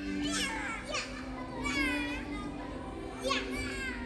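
Young children squealing and shrieking at play: about four high, wavering cries, the longest near the middle.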